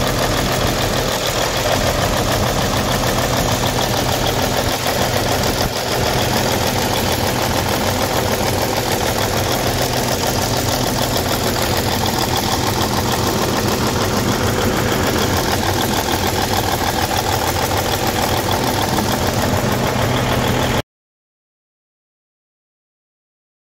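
Cummins N14 Plus inline-six turbo diesel in a Western Star truck, idling steadily. The sound cuts off abruptly near the end.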